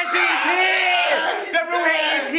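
Several young men shouting and yelling at once in long, overlapping excited cries.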